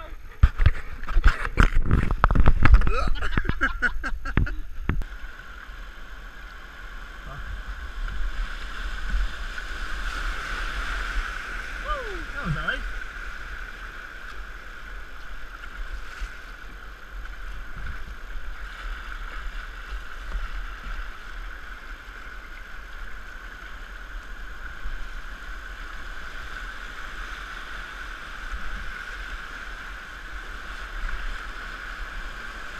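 Rushing whitewater of a flooded river's rapids, a steady rush of water heard from a kayak. In the first few seconds, a burst of loud knocks and clatter.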